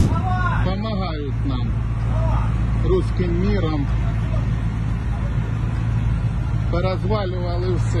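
A person's voice speaking in short, indistinct phrases, with pauses between them, over a steady low hum and outdoor background noise.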